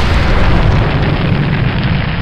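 Rocket engines firing at liftoff, a sound effect for a simulated launch: a loud, steady rumble, heaviest in the deep bass.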